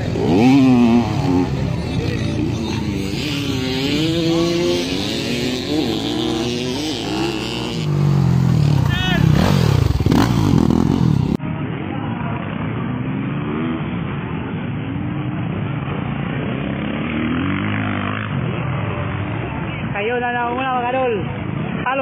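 Motocross dirt-bike engines revving and running, close at first, then farther off across the track after a sudden cut about halfway through, with voices over them and a man's voice near the end.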